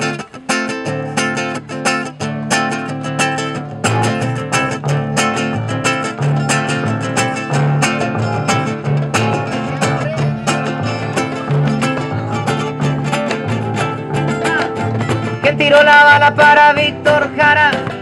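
Live acoustic folk band playing an instrumental introduction: strummed acoustic guitar over double bass and cello, with a drum beat struck with sticks. The music grows louder near the end as a brighter melody line comes in.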